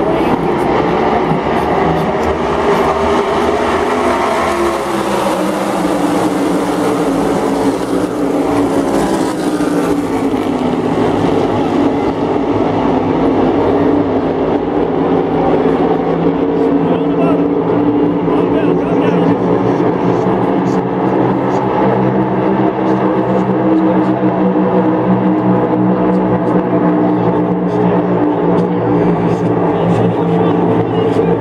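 A pack of NASCAR Cup Series stock cars running at full speed around the track, their V8 engines blending into one loud drone. In the first few seconds the engine pitch sweeps downward as cars pass, then it holds steady while the pack circles.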